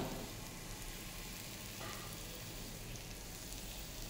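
Sliced mushrooms and chopped onion sizzling in oil in a frying pan, a steady, quiet sizzle.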